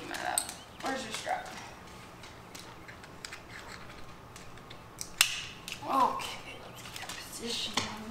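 Scattered light clicks and taps as two husky-type dogs move about on a hardwood floor and jump up on a crouching person, with a few short bursts of a voice in between.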